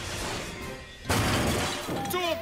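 Cartoon sci-fi teleport sound effect as a robot beams in: a hissing shimmer that jumps louder about a second in, over background music.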